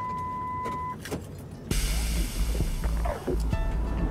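A steady one-second beep, a censor bleep tone, cuts off; then, from about two seconds in, background music over loud outdoor noise with a low rumble.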